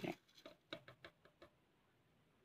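Dry rolled oats poured into the plastic bowl of a Braun food processor: a faint patter of grains landing that thins into scattered ticks and stops about a second and a half in.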